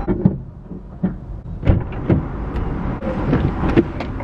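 A person getting into a car's driver's seat: a series of short knocks and thumps with rustling, over a steady low rumble.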